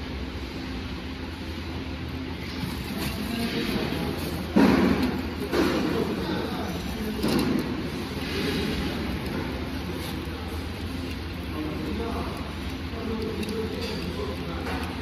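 A woven polypropylene sack rustling and crinkling as it is untied and hands rummage inside it, with a few louder scrunches about five to seven seconds in, over a steady low machine hum.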